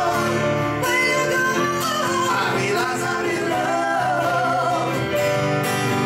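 Live duet: a man and a woman singing together, accompanied by strummed acoustic guitar and piano.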